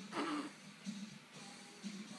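A child's brief high-pitched squeal that falls in pitch, about a quarter-second long, early on over quiet background music.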